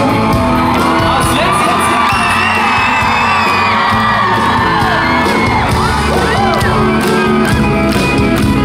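A live band playing in a concert hall while the audience screams and whoops over it, many high wavering screams overlapping through the middle of the stretch.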